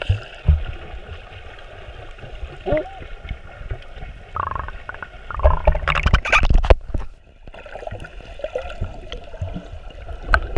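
Muffled underwater water noise with a few short gurgles of bubbles, then a loud burst of splashing and sloshing from about 5.5 to 7 seconds as the camera breaks the surface.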